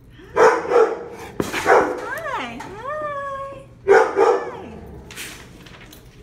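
German Shepherd mix barking in a kennel: three sharp barks, then after a long wavering voice that glides down and back up, two more barks.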